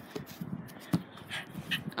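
Scuffling and rustling of a boy moving about on a grass lawn with a basketball, with a few short soft knocks, the sharpest about a second in.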